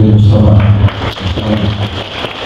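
A man's voice over a microphone and loudspeaker, holding one drawn-out syllable that stops just under a second in, followed by a short pause filled with room noise and a few faint voice fragments.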